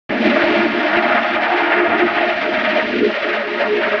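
Heavily effect-processed logo jingle, distorted and filtered into a loud, harsh, dense wash with no bass. It cuts in suddenly at the very start.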